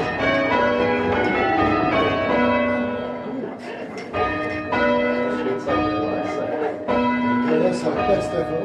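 A ring of six church bells cast by Whitechapel, tenor about 6 cwt in B, rung full-circle by rope, striking one after another in rapid succession and heard from the ringing chamber below the bells. There is a short lull about three and a half seconds in.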